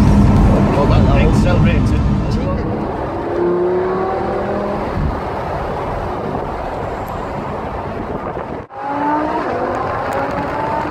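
Lamborghini Huracán's V10 engine heard from inside the cabin. It runs loud for the first couple of seconds, then settles lower, and its note climbs in pitch as the car accelerates, twice. The sound cuts out briefly near the end.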